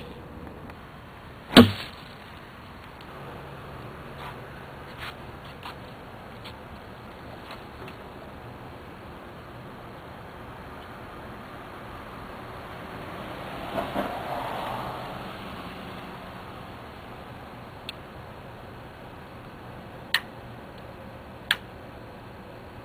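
A loud sharp knock about a second and a half in, over a steady faint hiss. Near the end, two sharp clicks of a cigarette lighter being struck.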